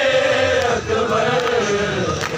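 A group of men chanting a noha, a Shia mourning lament, together in unison, with dull chest-beating strikes (matam) keeping time about once a second.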